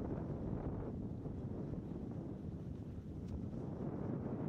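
Wind buffeting the camera's microphone during a descent of a ski run: a low, uneven rush of noise that rises and falls throughout.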